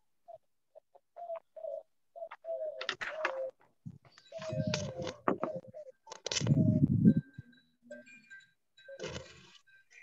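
Faint low cooing, dove-like, repeated in short phrases, with two louder bursts of handling noise about four and a half and six and a half seconds in.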